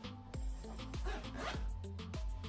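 A handbag zipper being pulled, over background music.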